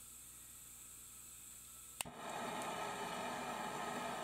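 Lampworking gas burner being lit: a sharp click about two seconds in, then the steady rushing of the flame as gas from a cassette gas can and air from an electric air pump burn at the burner head.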